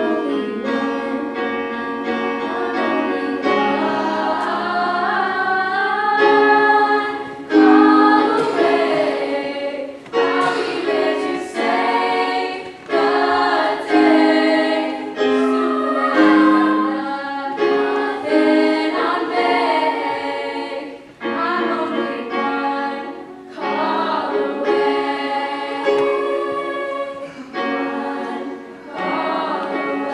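Girls' choir singing in harmony, with a few girls' voices at a microphone in front of the group. The singing comes in phrases with short breaks between them.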